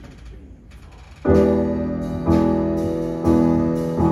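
Grand piano coming in about a second in with a loud chord, then playing sustained chords struck about once a second, with deep low notes beneath.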